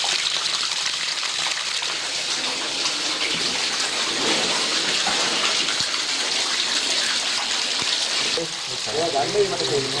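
Water gushing steadily from hoses onto a floor, an even rushing noise. A voice starts talking near the end.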